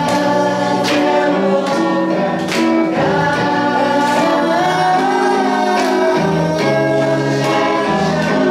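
A woman singing a song into a microphone while playing an electric guitar, holding long notes over the guitar's chords, with sharp accents about once a second.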